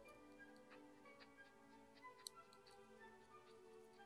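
Faint, irregular crisp clicks of a rabbit chewing leafy greens, over soft background music with long held notes.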